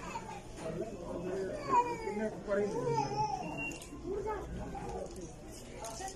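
Indistinct background voices, among them a high-pitched child's voice calling out, loudest a couple of seconds in.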